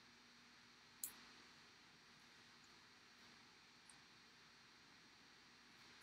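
Near silence of a small room, broken by a single short click about a second in, the snip of small fly-tying scissors.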